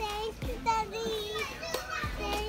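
A young child talking in short, high-pitched phrases, such as "thank you".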